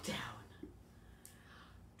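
A voice calling out a short word at the very start, then quiet room tone.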